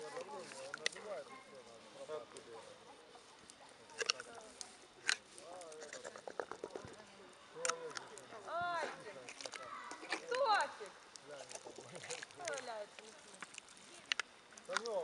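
A small child's high voice babbling and calling without clear words, with a few sharp clinks of a metal spoon against a glass jar as meat is scooped out.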